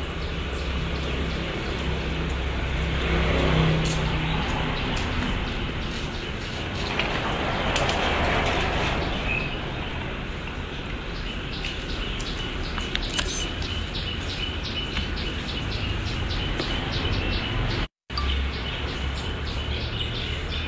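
Outdoor ambience: a steady rumble of distant traffic with birds chirping, one repeating a short chirp several times a second through the second half. The sound drops out for an instant near the end.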